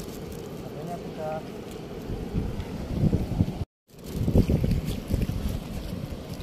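Wind buffeting the microphone: an uneven low rumbling that gusts louder in the second half. It cuts out completely for a moment about two-thirds of the way through.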